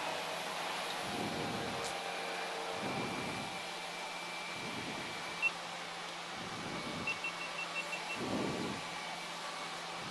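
Cessna Grand Caravan's single PT6A turboprop engine running on the ground before takeoff, heard inside the cabin as a steady hum and hiss with a low rumble that swells and fades every second or two. About five seconds in there is one short electronic beep, and a quick run of six short beeps follows a couple of seconds later.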